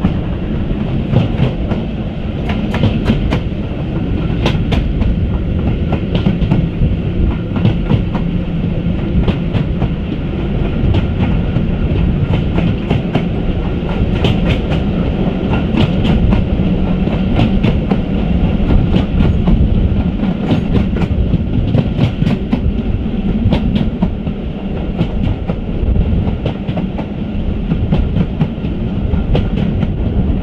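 A moving train's carriage heard from its open window: a steady rolling rumble with irregular clicks and clatter of the wheels over the track.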